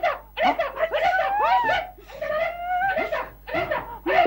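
Character voices making wordless vocal sounds, loud drawn-out cries that slide up and down in pitch, with no clear words.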